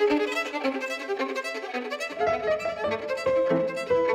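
Violin and Steinway concert grand piano playing classical chamber music as a duo, the violin line on top. About two seconds in, lower piano notes come in beneath it.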